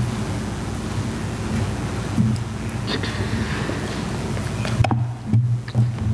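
Room noise over a live church PA microphone: a steady hiss with a low hum and a few scattered knocks. Near the end the hiss suddenly drops away and a few thumps follow, as at the pulpit.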